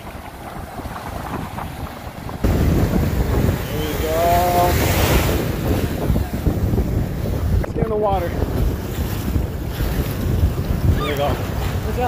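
Ocean surf washing in around the recordist in shallow water. Wind batters the microphone, heavily from about two and a half seconds in. Brief voice sounds come through a few times.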